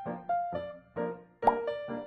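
Light background music of short, bouncy keyboard notes, with a sudden pop sound effect about one and a half seconds in.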